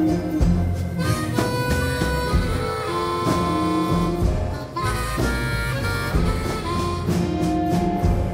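Instrumental break in a country blues song: a harmonica plays long held notes over a steady bass line and soft drums.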